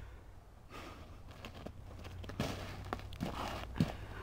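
Feet shuffling on snow and a plastic boogie board, with a few scattered soft crunches and taps over a steady low rumble.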